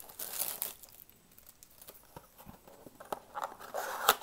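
Trading-card packaging being handled: plastic wrapping crinkles loudly at the start, a few light ticks follow, then cardboard rustles and crackles near the end as the blaster box's top flap is pried open.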